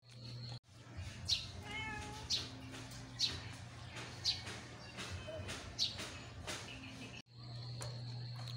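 Short, high animal calls repeated about once a second, with one longer pitched call about two seconds in; the sound cuts out abruptly twice.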